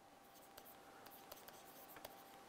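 Very faint taps and scratches of a stylus writing on a pen tablet, beginning about half a second in.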